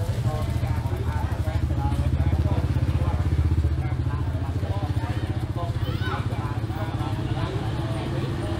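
A small motorcycle engine running close by, a steady low putter that grows louder through the middle and eases toward the end, with crowd voices over it.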